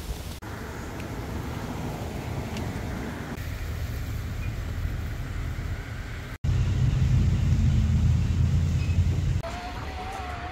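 Road traffic: cars going by with a steady hum of tyres and engines. About two thirds of the way in, a louder low rumble of a passing vehicle takes over for about three seconds.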